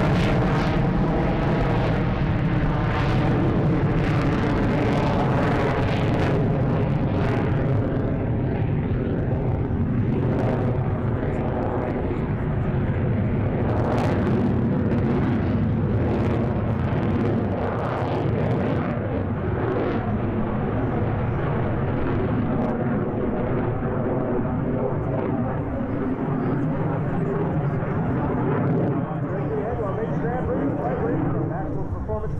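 F-16 fighter's jet engine on afterburner, a loud steady rumble as the jet climbs away, its high hiss fading after about eight seconds while the low rumble carries on.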